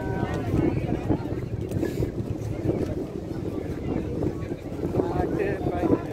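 Wind buffeting the microphone in a steady low rumble, with people's voices nearby at the start and again near the end.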